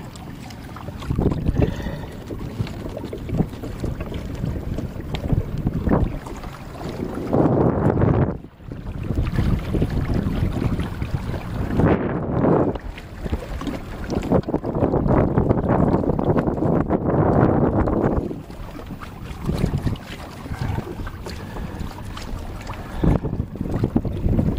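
Wind buffeting the microphone in long rising and falling gusts, over water splashing against the hull of a sailing kayak.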